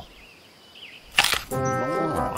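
A cartoon crunch of a bite into an apple, sharp and sudden just after a second in, following a quiet moment with a faint bird chirp. Music comes in right after it.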